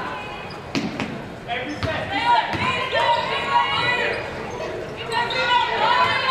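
A basketball being dribbled on a hardwood gym floor, with several sharp bounces in the first three seconds.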